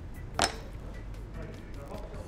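A single sharp knock of a hammer on a cutting board about half a second in, followed by faint room sound.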